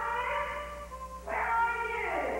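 Harmonica played with bent, wailing notes. One note rises and wavers, then a louder note starts sharply about 1.3 s in and slides down, sounding like a cat's meow.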